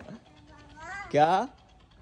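Speech only: one short spoken word, 'kya', with sharply falling pitch, about a second in.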